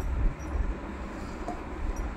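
A low, uneven rumble under a soft, steady rustling noise, with no speech.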